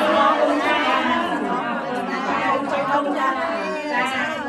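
Several women talking at once in a large hall: overlapping chatter.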